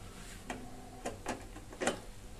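About four small sharp clicks as the electrical test setup is handled, the last and loudest near the end.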